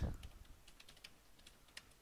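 Computer keyboard typing: faint, irregular key clicks as code is typed.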